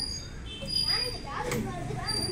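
Young children's voices calling out as they play on a spinning merry-go-round, loudest in the second half.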